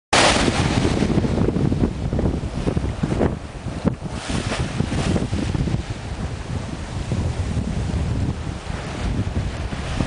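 Strong wind buffeting the microphone over the rush and splash of a sailboat's bow wave and waves breaking along the hull as it sails fast through rough open sea, with a few louder surges of spray.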